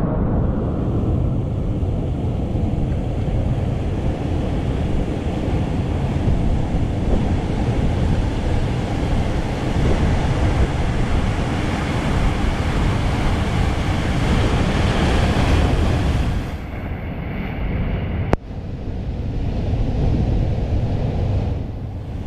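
Wind buffeting the action camera's microphone over the rush of surf, a steady heavy rumble that thins out near the end, with one sharp click about eighteen seconds in.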